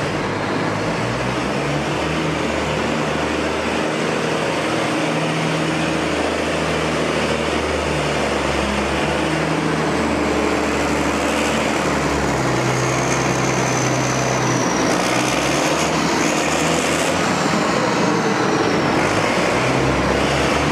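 Copper-concentrate filtration plant machinery running, with the conveyor loading filter cake into a railway wagon: a loud, steady industrial drone with a low hum. In the second half a faint high whine drifts in pitch.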